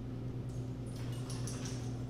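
A black Labrador retriever picking up and carrying a set of keys in her mouth, the keys jingling lightly in a few quick clinks.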